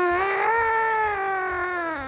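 A man's laugh that comes out as one long, high, whining tone like an alarm, holding nearly level and sinking slightly in pitch. It is the frozen-faced laugh of a man whose face is numb from Botox.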